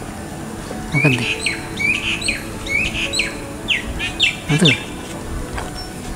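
A bird calling in a quick run of short, sharp chirps, about two or three a second, from about a second in until past the middle.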